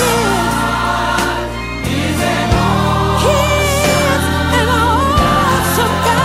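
Gospel song by a women's vocal group: voices singing with vibrato over instrumental backing with steady bass notes.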